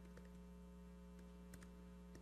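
Near silence: a steady low mains hum, with a few faint computer-keyboard clicks as a line of code is typed.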